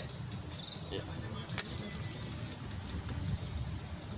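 A single sharp knock about one and a half seconds in: a hand striking a glass bottle in a bottle-breaking attempt, over low outdoor background.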